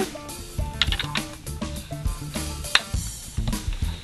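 Background music with a drum-kit beat: bass notes under regular drum and cymbal hits.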